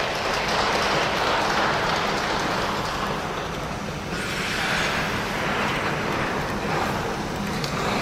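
Audience applauding, the clapping swelling and easing in waves.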